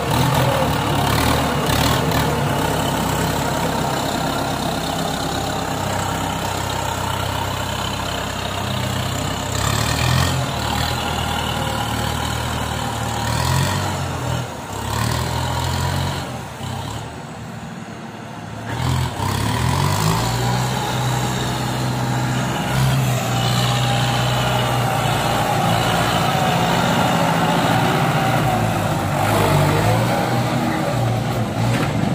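Kubota M9540 tractor's diesel engine working through mud with a rotary tiller attached, its low hum rising and falling in pitch in places. The sound drops away for a few seconds about halfway through, then comes back.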